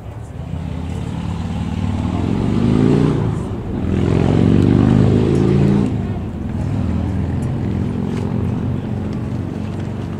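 A motor vehicle's engine accelerating: its pitch climbs, drops briefly about three and a half seconds in, climbs again to its loudest, then falls back to a lower, steadier drone.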